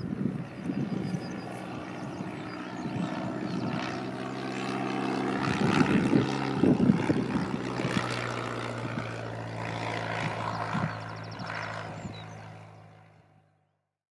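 Small propeller-driven aircraft flying past low with a steady piston-engine drone. It grows loudest about halfway through and fades away near the end.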